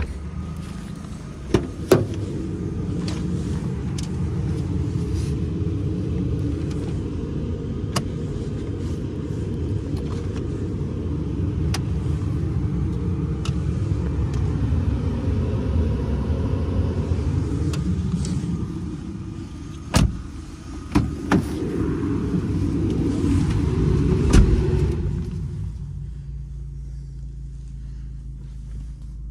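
Vauxhall Zafira engine idling steadily, heard from beside and around the car, with sharp clicks and clunks of its doors and fittings about two seconds in and again around twenty seconds in. Near the end the sound drops to a quieter, steady idle hum heard from inside the cabin.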